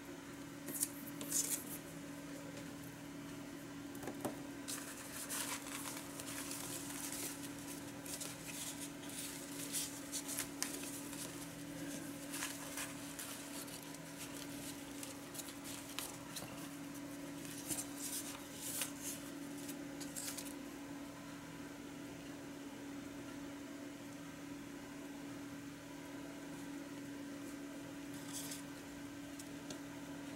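Paper scraps rustling and crinkling as hands dig through a plastic basket of paper ephemera, in short bursts through the first twenty seconds and once more near the end. A steady low hum runs underneath.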